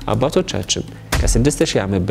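A man talking, with a deep low thud underneath a little past a second in.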